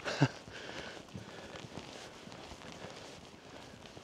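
Footsteps walking on a tarmac lane, quiet and irregular, with a short vocal murmur right at the start.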